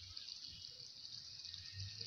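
Faint sizzling and bubbling of blended onion and ginger in olive oil cooking in a frying pan.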